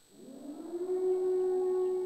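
Electronic siren-like tone from a live-coded Max and Tidal improvisation: it glides up in pitch and grows louder over the first second, then holds one steady note.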